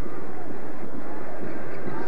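Basketball arena crowd noise: a steady din of many voices during live play.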